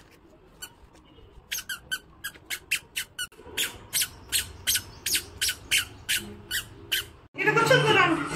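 A toddler's squeaker sandals chirping with each step on concrete: a short high squeak three or four times a second after a pause of about a second and a half. Near the end, loud music from a television cuts in.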